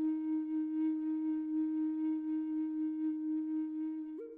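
Outro music: a flute holding one long, steady low note.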